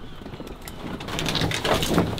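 A heavy fabric bag holding an inflatable raft rustling and scraping as it is dragged out of a car roof box, getting louder toward the end as it comes free.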